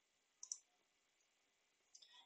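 A single computer mouse click about half a second in, against near silence.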